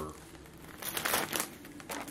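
Plastic snack packaging crinkling and rustling as it is handled, loudest about a second in.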